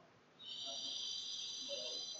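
Chalk squeaking on a blackboard while writing: one steady, high-pitched squeal starting about half a second in and lasting about a second and a half.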